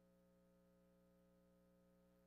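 Near silence: only a faint, steady hum with no change.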